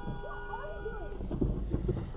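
A car horn sounding steadily for about a second and a half, heard from inside the car on a dashcam recording, with a woman's shouting and a low engine rumble underneath.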